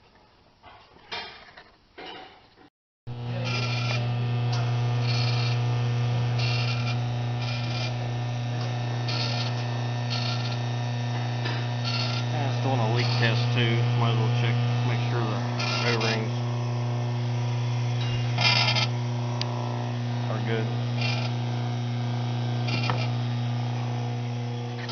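A few faint clicks of A/C service hose couplers being handled, then an automotive A/C service machine running its vacuum pump to pull vacuum on the system: a loud steady electric hum, with short bursts of higher noise at irregular intervals.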